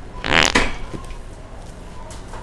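A single loud, buzzy fart noise about half a second long, starting just after the beginning, made as a prank.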